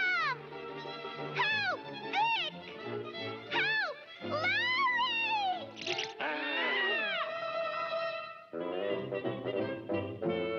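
Orchestral cartoon score playing a run of short swooping notes that rise and fall, then a longer held passage that breaks off briefly about eight and a half seconds in.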